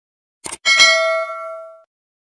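Subscribe-button sound effect: a quick double mouse click, then a bell ding that rings with several tones and dies away over about a second.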